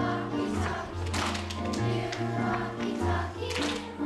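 A chorus of children singing a song together over instrumental accompaniment, with sustained bass notes and a few sharp percussion hits.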